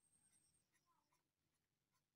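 Near silence: the audio is gated down to almost nothing.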